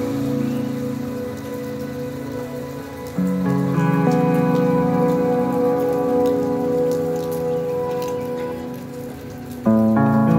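Steady rain falling on wet paving, under background music of slow, held chords that change about three seconds in and again near the end, each change a step louder.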